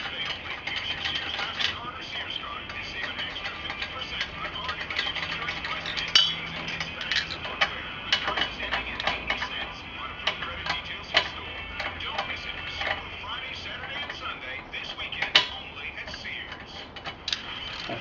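Lug nuts being spun off the wheel studs by hand and clinking in the hand: a run of small, irregular metallic clicks and ticks.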